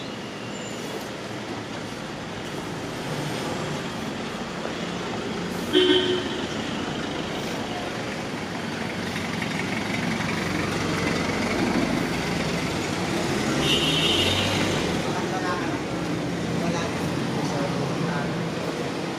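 Busy street traffic with cars passing and people talking. A short car horn toot sounds about six seconds in, and a second, higher-pitched toot comes near fourteen seconds.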